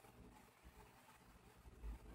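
Near silence: faint room tone with a low hum, and a slight soft low knock near the end.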